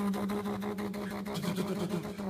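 A man's voice held on one steady low pitch with a rapid buzzing rattle running through it.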